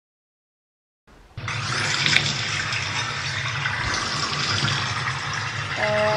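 Water from a tap running and splashing onto a young chimpanzee in a stainless steel sink. It starts suddenly about a second in after silence and then runs steadily.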